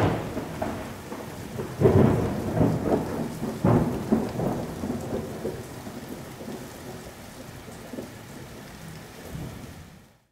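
Thunderstorm sound effect: steady rain with rolls of thunder, the loudest near the start, about two seconds in and about four seconds in, dying away toward the end.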